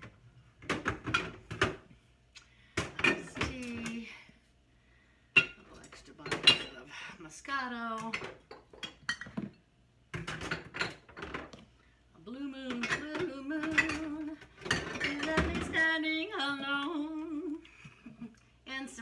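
A woman humming a tune to herself, holding long, wavering notes in the last few seconds. Glass bottles clink now and then as they are loaded into a refrigerator's door shelves.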